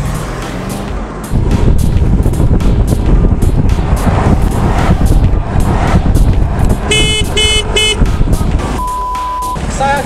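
Loud wind and road rumble from a scooter riding at speed. About seven seconds in, a vehicle horn gives three short toots, and shortly after comes a steady one-pitch bleep of under a second.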